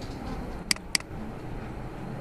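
A computer mouse double-clicked: two sharp clicks a quarter second apart, opening a file. Under them is a steady low rumble of background noise.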